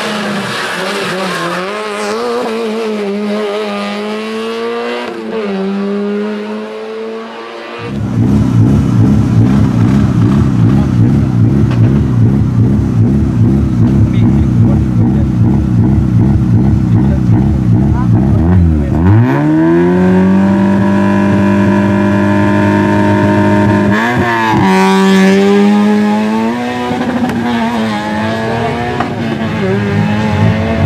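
A small hatchback race car's engine. First it revs and comes off the throttle through a hairpin. After a sudden cut it idles loud and lumpy close up, then about two-thirds of the way in it revs up sharply and pulls away, rising and dropping in pitch as it changes gear.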